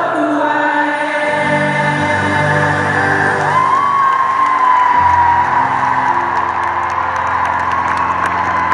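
Live band music in an arena, heard from the crowd through a phone's microphone: held chords, a long note that slides up and holds from about three and a half seconds in, and a deep bass note joining about five seconds in, with crowd whoops.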